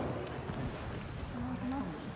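Footfalls and a body landing on tatami mats as an aikido partner is thrown in a two-hand-grab breath throw (ryote dori kokyu nage) and rolls out, with voices in the hall. A short voice sounds near the end.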